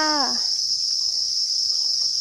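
A dense chorus of many farmed crickets chirping together, a steady, unbroken high-pitched sound.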